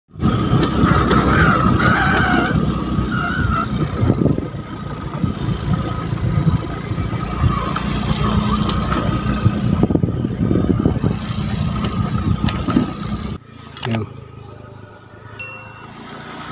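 Small motorcycle running on a dirt track, with wind rushing and buffeting over the camera microphone. About 13 seconds in it cuts off suddenly to a much quieter stretch.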